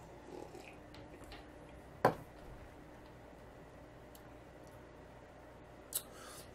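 Faint sipping and swallowing as a man tastes beer from a stemmed glass, then one sharp knock about two seconds in as the glass is set down on the table, and a small click near the end.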